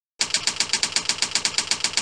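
Typewriter typing sound effect: a quick, even run of keystrokes, about nine a second, starting a moment in and stopping abruptly after about two seconds, laid under the web address being typed out on screen.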